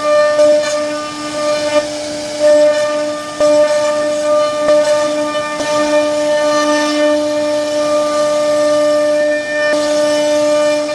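CNC router spindle running with a steady pitched whine as its bit carves a relief pattern into a wooden panel. The loudness dips and rises a few times, with a few faint ticks.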